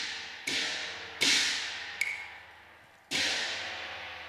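Cantonese opera percussion: four sharp strikes of cymbals and gong, each left to ring and fade. The loudest comes about a second in, and a short, higher ringing stroke falls near the middle.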